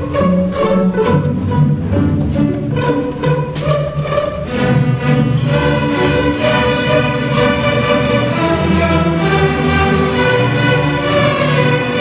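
Elementary school string orchestra playing, with violins leading over cellos and basses. Short detached bow strokes for the first four seconds or so give way to longer held notes.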